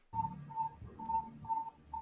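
Electronic device beeping: a short, steady high-pitched beep repeating about two and a half times a second, over a low background rumble.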